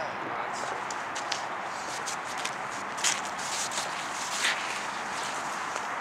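Steady outdoor background noise with a few light clicks and scuffs from handling, the clearest about three seconds and four and a half seconds in.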